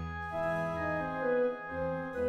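Orchestral music: the opening of a symphony's slow Adagio movement, sustained chords with held melody notes that change slowly.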